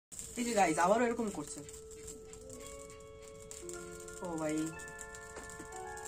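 Background music of held notes that enter one after another and layer up, under a short spoken greeting at the start.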